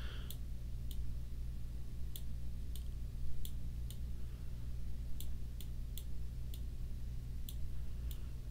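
Computer mouse buttons clicking about a dozen times at irregular intervals as vertices are selected and dragged, over a steady low hum.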